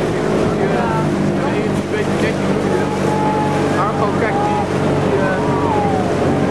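Small motorboat's engine running steadily, with voices calling over it.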